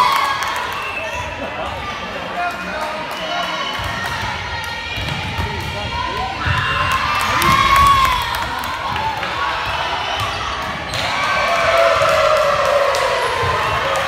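A volleyball bouncing on a hardwood gym floor, with spectators and players talking and calling out in a large, echoing gymnasium.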